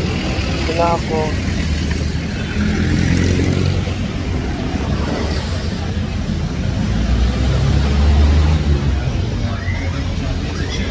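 Busy city street traffic: engines of jeepneys and cars running close by, a steady heavy rumble that grows louder about eight seconds in.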